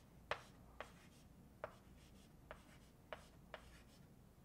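Chalk writing on a blackboard: about six short taps as numbers are chalked up.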